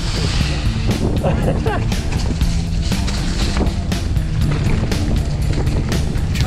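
Mountain bike rattling and rumbling down a rough dirt trail, with many short knocks from the bike and wind on the helmet camera's microphone, under background rock music.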